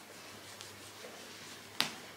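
Quiet rustling of hands stroking a golden retriever's long fur, with one sharp click near the end.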